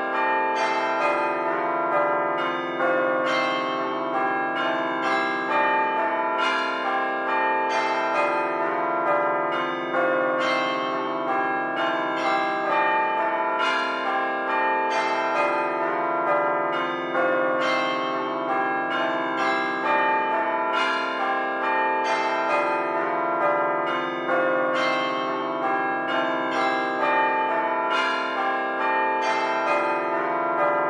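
A peal of bells struck one after another in quick succession, with many pitches overlapping and ringing on, at a steady level.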